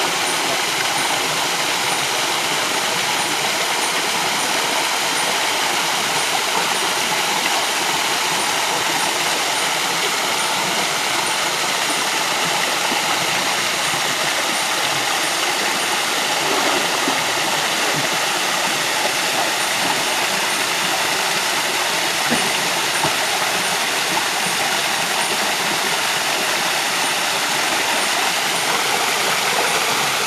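River water rushing steadily, a loud unbroken noise with no change in level.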